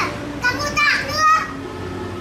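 A child talking in a high voice, a short stretch of speech in the first half.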